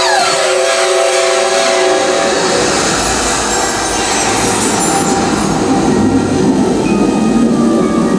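Sound effects from a nighttime water-and-light show's soundtrack over loudspeakers: a dense rushing, rumbling noise with falling sweeps near the start, a deep low rumble joining about two and a half seconds in, and music faintly beneath.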